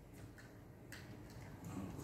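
A few faint, light clicks of a small metal communion cup being picked up, over a low steady room hum.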